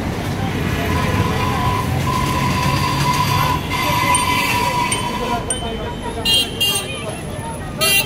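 Voices of a crowd over street traffic noise, with short vehicle-horn toots near the end.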